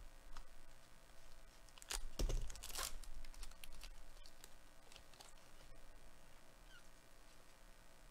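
A trading-card pack wrapper being slit and torn open with a box cutter: a loud rip about two seconds in, then crinkling of the wrapper and small clicks of the cards being handled.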